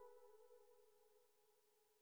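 The beat's final held keyboard-synth chord, faint and fading away as the track ends.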